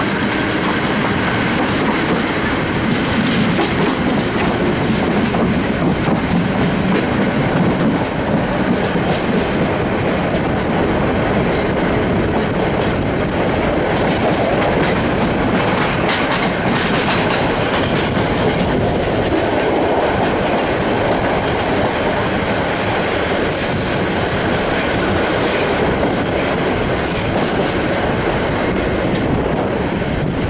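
Passenger train coaches running along the track, heard from an open carriage window: a steady rumble and rush of wheels on rail and passing air. Clicks of wheels crossing rail joints and points come in clusters through the middle and again near the end.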